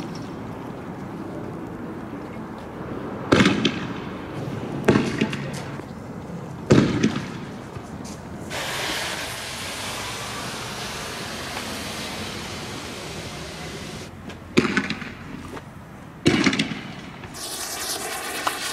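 Five sharp bangs of riot-control weapons being fired, each with a short echo: three in the first half, two more near the end. In between comes a steady hiss from a tear gas canister pouring out smoke close by.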